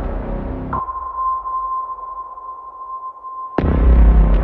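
Horror-film soundtrack music that drops away about a second in, leaving one steady, high, beep-like electronic tone held for nearly three seconds. The full music comes back suddenly near the end.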